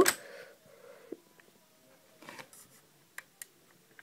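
Faint plastic clicks of LEGO pieces being handled and a 2x4 tile pressed into place: a single click about a second in, a brief rustle past the middle, and two quick clicks near the end.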